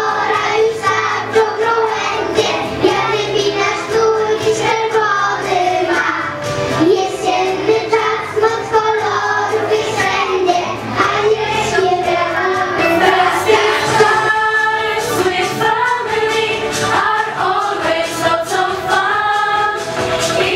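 Young children singing a song with musical accompaniment, a girl's amplified solo voice together with a group of children.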